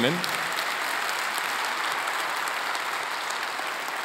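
Congregation applauding: steady, even clapping that eases off slightly toward the end.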